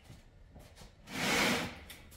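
A wooden chest scraping once, a short rub lasting under a second, about a second in.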